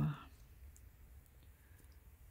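Faint clicks and light handling noise as a cross-stitch embroidery hoop and its linen are moved and laid down.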